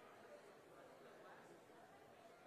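Very faint, indistinct chatter of several people talking at a distance, no words made out.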